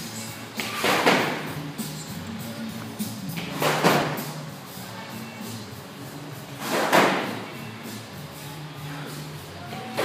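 A thick, heavy rope slammed onto a concrete floor three times, about three seconds apart, each hit ringing on briefly in the room.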